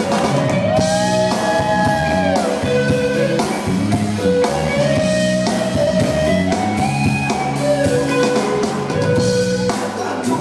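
Live rock band playing: electric guitar holding long lead notes that slide up and down in pitch, over bass guitar and a drum kit.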